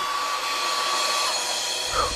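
A steady rushing noise with a thin held high tone that bends downward and fades about a second and a half in.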